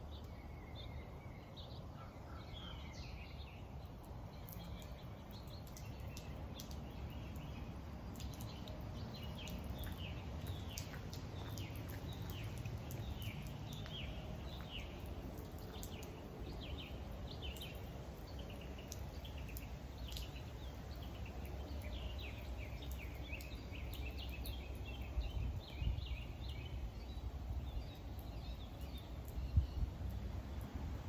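Outdoor background of birds chirping in quick repeated series over a steady low rumble, with a couple of low bumps near the end.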